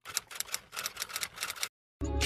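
Typewriter keys clacking in a quick, irregular run of sharp clicks, as a sound effect; the clacking stops abruptly shortly before the end.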